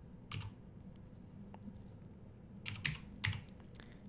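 Keys being typed on a computer keyboard: one keystroke just after the start, then a quick run of several keystrokes about three seconds in.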